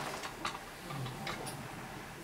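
Quiet room tone with a few faint, sharp clicks.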